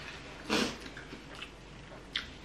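A short, sharp breath out through the mouth, a huff, from a person eating at the table, about half a second in, followed by faint small mouth and table sounds.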